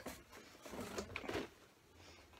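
Faint rustling and scraping of packaging as a boxed figure is lifted out of a cardboard shipping box padded with plastic air pillows, busiest around the middle, then near quiet.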